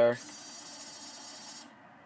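The CD drive in a 2013 BMW 4 Series head unit whirs steadily for about a second and a half and then stops suddenly. The eject button has been pressed with no disc loaded.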